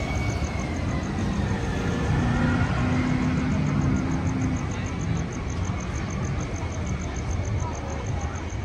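Outdoor theme-park ambience: a steady low rumble with faint crowd voices, and a high, even ticking of about five pulses a second throughout.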